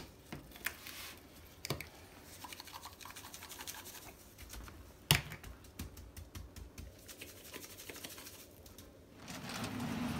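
Seasoning rub shaken from a plastic shaker onto a raw brisket on a sheet pan: a run of quick small ticks and rattles, broken by a few sharper clicks of the shaker and gloved hands. A steady low noise comes in near the end.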